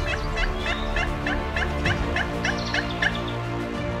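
Hand-worked turkey call sounding an even run of hen-turkey yelps, about three to four a second, stopping about three seconds in. Music plays underneath.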